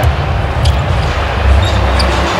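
Basketball being dribbled on a hardwood court over steady low arena background noise.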